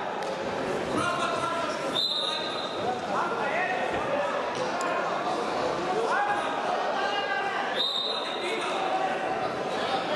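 Several people shouting and calling out over one another in a large, echoing sports hall. Many of the calls rise in pitch.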